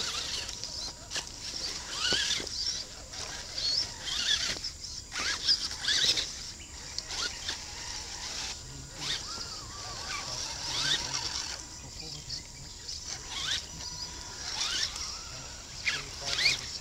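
Scale RC crawler trucks' small electric motors and gears whining in short bursts that rise and fall in pitch with the throttle as they drive through mud, with a few sharp clicks.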